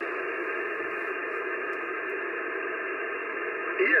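Shortwave band hiss from an Icom IC-740 HF transceiver's speaker, receiving single-sideband on the 15 m band at 21.230 MHz: a steady hiss with its top end cut off by the receiver's filter. Near the end the distant station's voice comes through saying "yes".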